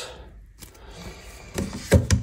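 Quiet handling noise, then a few short knocks near the end, the loudest just before it stops, as a hand takes hold of a plastic tub of plumber's putty standing in a stainless steel sink.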